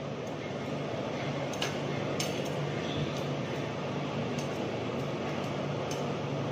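A commercial gas-range burner flame running steadily under a roti, over a steady low hum. A few light metal clinks of tongs against the burner ring come through.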